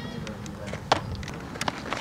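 A softball smacking into a leather fielding glove: one sharp pop about a second in, with a fainter knock later, over a steady low outdoor rumble.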